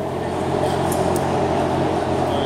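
Steady drone of workshop machinery: a low hum with a hiss over it, holding level throughout.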